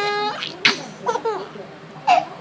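Baby laughing: a held, high-pitched laugh at the start, then a sharp burst and a few shorter laughs about a second in.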